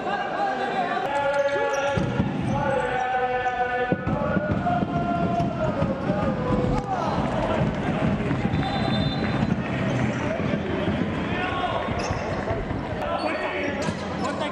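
Game sounds on an indoor wooden futsal court: the ball thudding off the floor and feet, and players' shoes squeaking, echoing in the hall. A raised voice is heard over it in the first few seconds.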